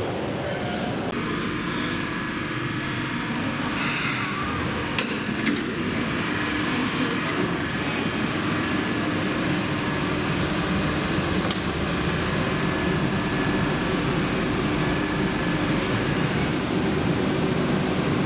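Steady hum inside an airport automated shuttle-train car, its ventilation and equipment running with a constant low tone and a fainter high one. A few sharp clicks come about four to five seconds in, followed by a brief hiss.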